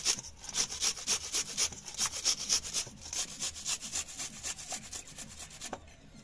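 A red onion being grated on a stainless-steel grater: a rhythmic scraping at about three strokes a second, softer in the second half.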